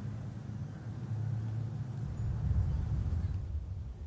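Steady low rumble of a car heard from inside the cabin, swelling a little and easing off near the end.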